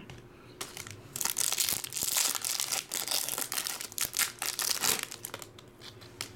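Trading-card pack wrapper crinkling as it is torn open and handled: a dense run of sharp crackles from about a second in, dying down near the end.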